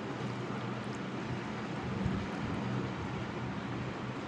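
Steady background hum and hiss, unchanging throughout, with a low drone underneath.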